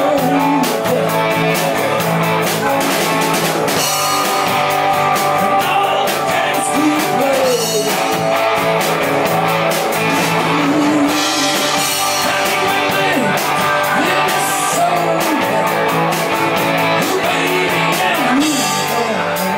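Rock band playing live: a drum kit keeps a steady beat under electric and acoustic guitars.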